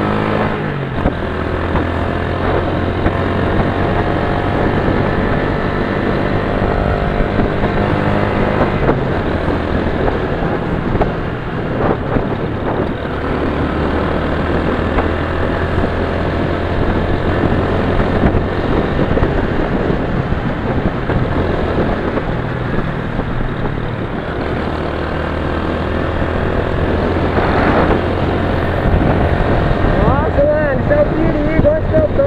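Motorcycle engine running at road speed, with wind rushing over the microphone. The engine note holds fairly steady and shifts in pitch a few times.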